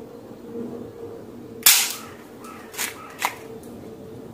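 A spring-powered toy Walther P38 air pistol fires a tsuzumi (drum-shaped) pellet with one sharp, loud snap about one and a half seconds in. A few fainter clicks follow over the next two seconds.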